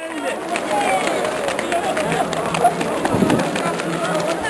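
Indistinct voices of several people talking, with faint quick footfalls of runners sprinting on a synthetic track.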